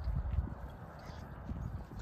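Cattle grazing on pasture: soft, irregular tearing and crunching as they crop the grass, over a low rumble of wind on the microphone.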